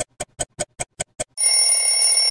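Clock ticking sound effect, seven quick ticks at about five a second, then an alarm bell ringing loudly for about a second, the jingle for a wristwatch logo.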